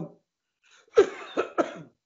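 A person coughing: three short coughs in quick succession about a second in.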